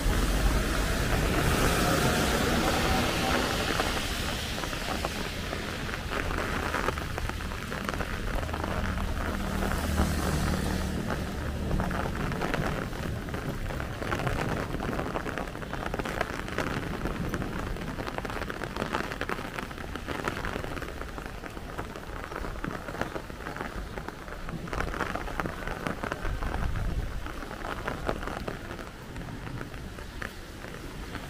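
Steady rain falling on a wet street. It is louder near the start and again about ten seconds in, with low rumbles from traffic on the wet road.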